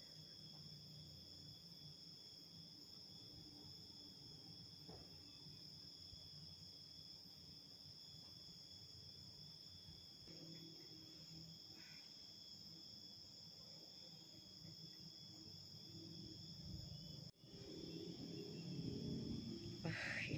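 Faint, steady high-pitched drone of insects chirring. Near the end the sound drops out briefly, and a louder low rumbling noise follows.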